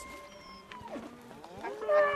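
Cattle mooing: a call that drops in pitch about a second in, then a louder call near the end.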